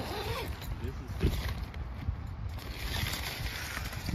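Nylon coil zipper on a cabin tent's fabric door being pulled open by hand, a scratchy running zip.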